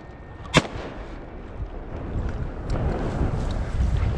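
A single loud shotgun shot about half a second in, from duck hunters firing on a flock of teal, followed by low rumbling wind on the microphone that builds toward the end.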